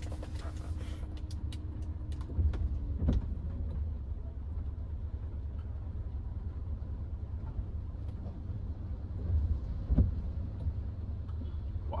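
Cabin noise inside a Hyundai HB20 1.6 automatic in slow traffic: a steady low engine and road rumble. A few short knocks come around two and a half to three seconds in, and a sharper one near the ten-second mark.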